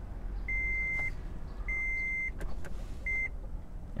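Toyota Prius's in-cabin warning chime beeping: a single high tone, each beep a little over half a second long, repeating about once every 1.2 seconds, the last beep cut short near the end.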